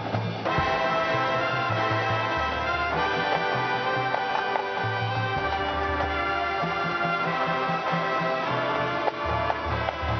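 High school marching band playing: sustained brass chords from trumpets, trombones and sousaphones over a low bass line that shifts every second or so, with marching and pit percussion.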